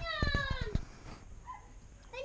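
A young child's high-pitched excited squeal: one call that falls in pitch and lasts under a second.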